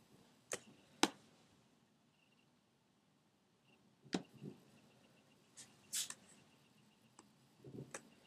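Scattered computer mouse clicks: a few sharp single ticks spaced irregularly over several seconds, with quiet between, as a clone stamp tool is clicked on the image.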